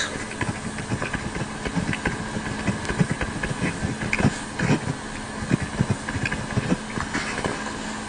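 Livescribe smartpen writing on paper: irregular scratches and taps of pen strokes, picked up close by the pen's own microphone over a steady hiss and a faint low hum.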